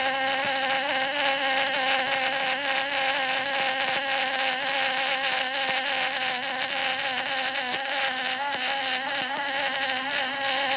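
Aluminium MIG welding arc running continuously along a trailer I-beam: a steady buzzing hiss with a constant hum underneath. The welder says the bead was run quite hot, for full penetration.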